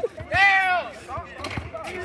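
A person calls out once, a drawn-out shout about a third of a second in, over scattered short thuds of a basketball bouncing and players' feet on the outdoor court.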